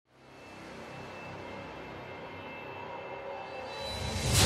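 Intro music fading in over the first half second, then a steady, drone-like backing with a few held high notes and a shifting low bass line.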